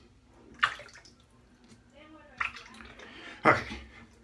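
Water splashed by hand during a wet shave: three short splashes over a quiet background, the last one the loudest.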